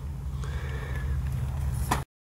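Low, steady drone of an idling engine, with a short click near the end.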